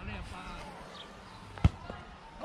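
A single sharp thump about one and a half seconds in, followed by a fainter knock, over faint distant voices.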